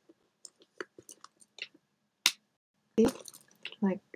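Light handling of a fabric purse: faint rustles and small clicks, then one sharp click a little over two seconds in from its metal snap closure, which is very strong and must be pulled hard.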